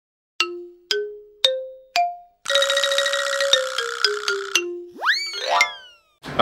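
Short musical jingle for a title card: four plucked notes climbing in pitch about half a second apart, then a quick run of notes stepping down, ending in a springy 'boing' that swoops up and slides away.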